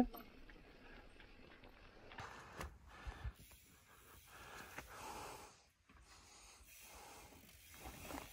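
Near silence, with a few faint, brief rustles and knocks about two to three seconds in and a soft longer noise around five seconds.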